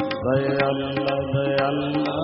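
Sikh kirtan: harmoniums hold steady chords under regular tabla strokes, and voices come in singing the hymn just after the start.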